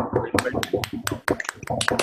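Scattered applause over a video call: a quick, irregular run of sharp hand claps over overlapping voices, right as a talk ends.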